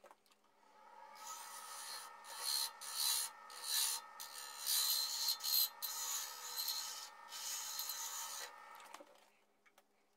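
A wood lathe spins up and runs while a turning gouge cuts the spinning workpiece in a series of short passes, heard as a scraping noise over the motor's steady hum. The lathe runs down and stops about a second before the end.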